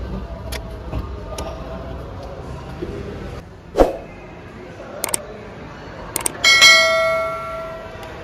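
A single sharp knock about four seconds in, then two short clicks and a bell ding that rings out and fades over about a second and a half: the sound effect of an on-screen subscribe button.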